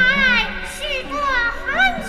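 A young woman speaking in a high-pitched voice over background music.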